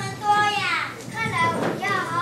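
A young child's high-pitched voice speaking, in drawn-out phrases that slide in pitch.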